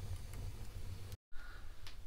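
Newly lit wood fire of kindling and split logs crackling faintly in a fireplace, a few sparse pops over a low rumble. The sound drops out completely for a moment just over a second in.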